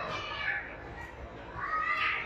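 A toddler's high-pitched vocal sounds: a short squeal about half a second in, then a longer squeal that rises in pitch near the end.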